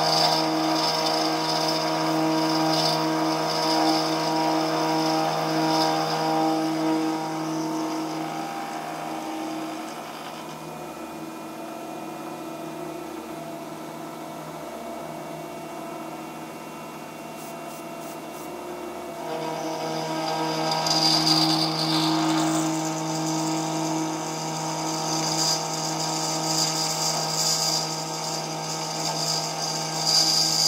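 Milling machine with an endmill cutting a steel T-nut blank clamped in a vise: a steady spindle hum under a high cutting whine. About ten seconds in the cutting noise fades to a quieter run, and it comes back louder shortly before the twenty-second mark.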